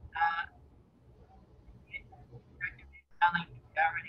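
Speech over a poor video-call connection, breaking up into short broken fragments with gaps and a brief dropout between them.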